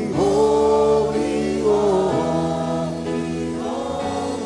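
Gospel worship singing: a choir holds long notes in two drawn-out phrases over a steady instrumental accompaniment.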